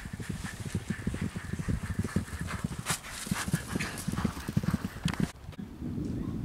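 Hoofbeats of two racehorses galloping on turf, a fast, dense drumming, with one sharp knock about three seconds in. The hoofbeats break off abruptly shortly before the end.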